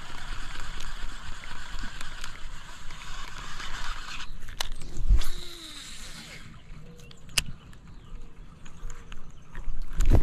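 A frog lure cast on a baitcasting rod and reel: a thump and a brief whir of line off the spool about five seconds in, then a sharp click. A steady high buzz, like insects, runs before it and cuts off.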